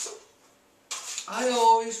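A man's voice: a brief sound at the start, then a pause of near silence, then a drawn-out voiced sound that swells loud in the second half.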